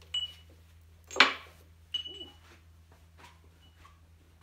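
Glazed ceramic mugs and a kiln shelf knocking and clinking as the loaded shelf is moved and set down. There are three sharp knocks, the loudest a little over a second in; the first and third ring briefly.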